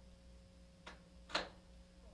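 Steady mains hum from an electric guitar rig, a Stratocaster into a combo amp, with two sharp clicks about half a second apart near the middle, the second louder. The hum is the noise the Electro-Harmonix Hum Debugger is being hooked up to cure.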